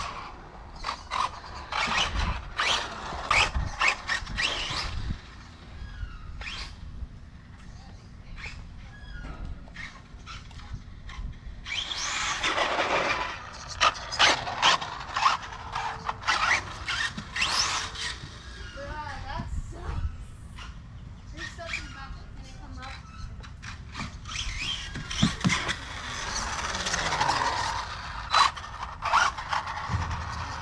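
Electric RC buggy driving on a rubberized surface, its motor whining in short bursts of throttle with louder runs about twelve seconds in and again near the end, mixed with children's voices and squeals.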